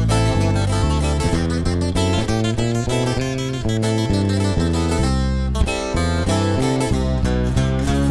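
Live band's instrumental break: acoustic guitars picking and strumming over a steady bass line, with no singing.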